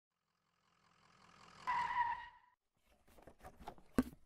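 Logo-animation sound effects: a rising whoosh that swells into a bright ringing tone about two seconds in. Then, after a short gap, a quick run of clicks ending in a sharp hit near the end.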